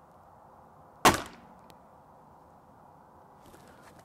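A single shot from a .22 Gamo Magnum Gen 2 break-barrel air rifle firing an H&N 21-grain slug: one sharp crack about a second in that dies away quickly.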